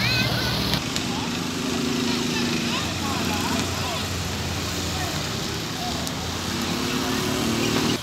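A motor vehicle's engine running steadily, with a low hum that shifts slightly in pitch, under faint distant voices.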